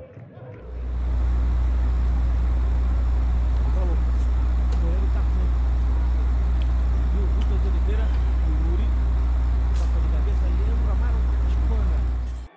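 A loud, steady low rumble with no change in level, fading in during the first second, with faint distant voices over it.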